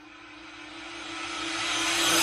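A riser sound effect: a rushing swell that grows steadily louder, with a steady hum under it, building toward an outro sting.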